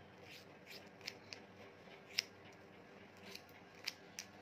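Hairdressing scissors snipping through straight hair, a short cut at a time as sections are combed out. There are about seven irregular, crisp snips, the loudest just after two seconds.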